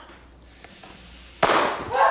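A single sudden loud bang about one and a half seconds in, its sharp crack dying away over about half a second.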